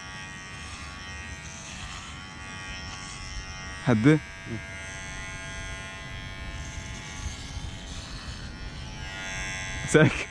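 Cordless electric hair clippers running with a steady buzz while shaving hair close on the side of a head.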